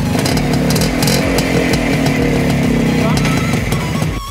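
Minsk 125 cc single-cylinder two-stroke motorcycle engine running on the stationary bike, its note sagging slightly in pitch over the few seconds, with background music underneath.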